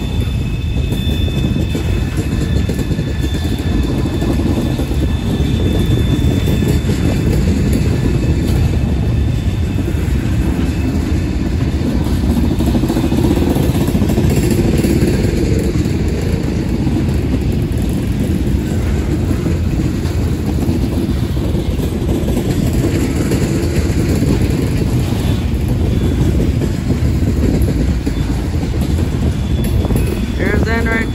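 Loaded coal hopper cars rolling past close by: a steady rumble and clatter of steel wheels on rail. A faint thin high squeal sounds over the first several seconds.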